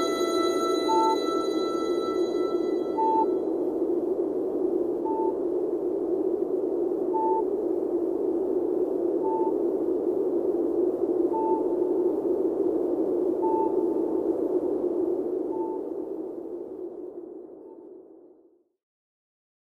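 Electronic outro of the recording: a steady hissing whoosh with a short high beep about every two seconds, like a sonar ping. A sustained chord dies away in the first few seconds, and the whole sound fades out near the end.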